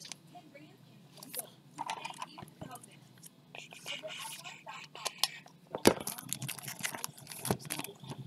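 Hands handling trading-card boxes and their packaging: scattered crinkles, scrapes and clicks. The loudest knock comes about six seconds in and another near the end.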